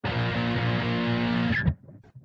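Electric guitar tuned to standard C, playing a held chord that rings and is cut off about one and a half seconds in with a short high squeak, leaving a brief silence.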